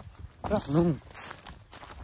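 A man's voice briefly, then quiet footsteps on dry ground.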